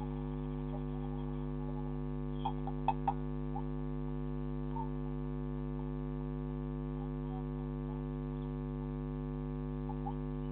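Steady electrical mains hum, a low buzz carried on the security camera's audio, with a few faint clicks about two and a half to three seconds in.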